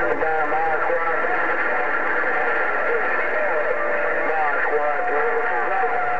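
A distant station's voice received over a President HR2510 radio's speaker on 27.085 MHz, thin and muffled under a steady hiss of static.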